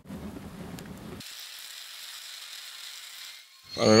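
Faint crackling of a wood fire burning inside a cast-iron pot belly stove. A little over a second in, the lower sound drops away, leaving only a faint hiss.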